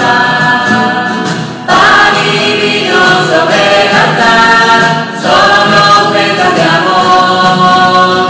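Small mixed choir singing a Spanish church hymn in unison phrases, accompanied by strummed acoustic guitars. A new, louder phrase comes in about two seconds in and again about five seconds in.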